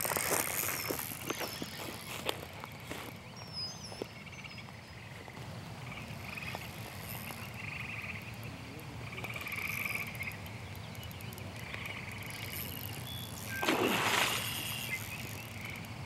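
Frogs calling in short, repeated trills, with a few bird chirps a few seconds in. Near the end comes a brief, louder rush of noise.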